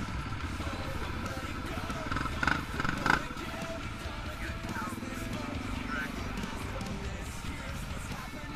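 Trail motorcycles running slowly with a low rumble, under background music, with two sharp knocks about two and a half and three seconds in.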